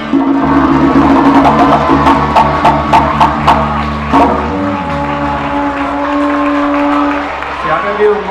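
Canarian folk band of button accordion, bass guitar and strummed guitars and timple playing the closing bars of a rumba. Rhythmic strummed chords over a steady bass run for about four seconds, then the band settles on a long held final chord, carried by the accordion, that fades out near the end.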